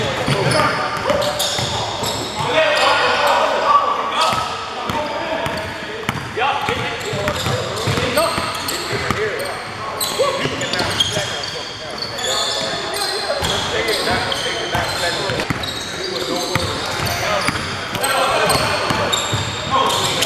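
Basketball bouncing on a hardwood gym floor with many short thuds, mixed with players' voices, all echoing in a large gym.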